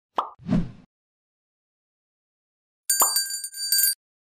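Two quick pop sound effects in the first second. About three seconds in comes a click, followed by a bright notification-bell chime, several high tones ringing together for about a second before cutting off.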